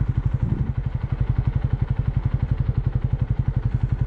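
Honda CB125R's single-cylinder four-stroke engine running at low revs as the bike rolls slowly away, a steady, rapid, even pulsing.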